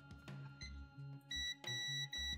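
Digital multimeter's continuity beeper sounding as the test probes make contact: a short high beep about a second and a half in, then a longer steady beep.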